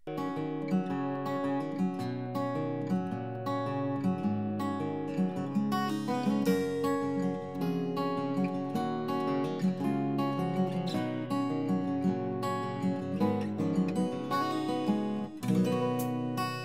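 Soft background music: acoustic guitar plucking a gentle melody.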